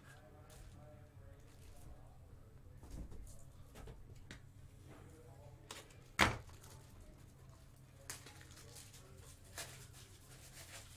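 Steady low room hum with a few small knocks and one sharp, loud thump about six seconds in, from handling on the desk. A faint voice is in the background.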